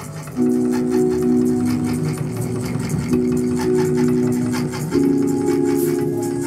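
Electronic music: three sustained synthesizer chords in turn, the first entering shortly after the start and the others changing at about three and five seconds in, over a steady, fast ticking rhythm.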